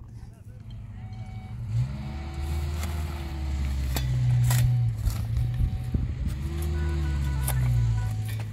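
Shovel blades scraping and knocking into stony soil a few times, over a loud, low drone with long held notes that swell and fade.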